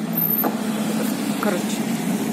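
A nearby motor vehicle's engine running as it moves close past, a steady low drone.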